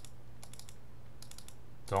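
A few light clicks at a computer, a cluster about half a second in and more just before the end, over a steady low hum. They come as several cards are turned sideways on screen to exhaust them.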